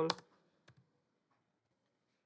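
A couple of faint computer keyboard keystroke clicks in the first second, then near silence.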